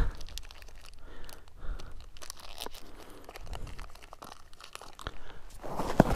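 Plastic wrapper of a packet of Clif Bloks energy chews being torn open and handled, with scattered crinkles and crackles.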